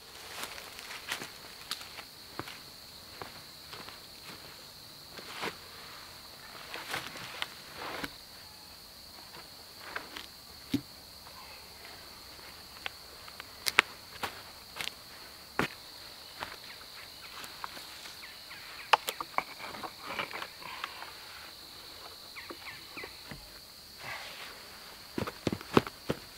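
Footsteps crunching irregularly on dry leaves and twigs on a forest floor, with a few sharper snaps and knocks, over a steady high-pitched insect buzz.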